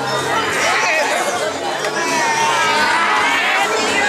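Crowd of onlookers shouting and calling out, many voices at once.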